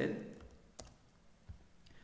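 Computer keyboard keystrokes while editing code: two short, sharp key clicks about three-quarters of a second apart against quiet room tone.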